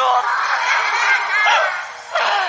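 Audience laughing together at a joke in a live comedy recording, a burst of laughter that dies down near the end.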